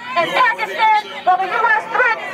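Speech only: a voice talking without pause, with other voices chattering around it.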